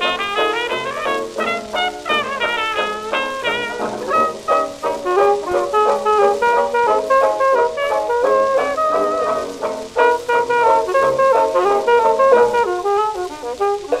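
A 1927 hot jazz dance band heard from a 78 rpm record: brass and reeds play a lively, busy ensemble passage with many overlapping notes, some of them bent.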